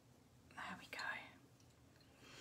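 A brief breathy whisper or murmured word, against otherwise very quiet room tone.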